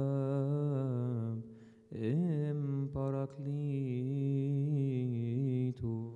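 A man's voice chanting a Coptic liturgical hymn in long, drawn-out notes with a wavering pitch. The chant breaks off briefly about a second and a half in and again near the end.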